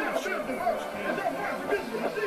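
A crowd of people in the stadium stands talking at once: a steady chatter of many overlapping voices.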